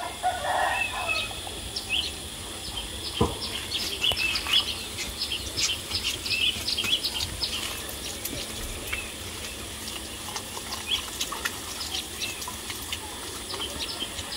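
Chickens calling: a run of many short, high chirps, thickest in the first half and thinning out later.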